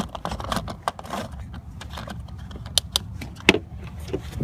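A scatter of sharp clicks and light taps from handling, over a steady low rumble.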